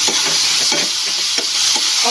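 Sliced bitter gourd, onion, garlic and tomato sizzling in a frying pan with a steady hiss while a metal spoon stirs them, its repeated strokes scraping and knocking against the pan.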